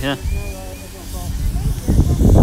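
Railway station platform ambience: faint distant voices over a low steady rumble. A loud low rush on the microphone starts near the end.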